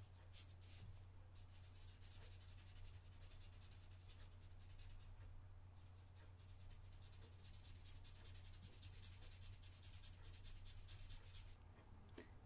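Faint, rapid scratching of a Chameleon marker's brush nib on paper as it is worked back and forth in quick strokes, in runs with brief pauses about a second and a half and about six seconds in. A low steady hum sits underneath.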